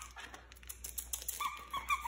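Standard Poodle puppy whining with a thin, high tone in the second half, over scattered small clicks and taps.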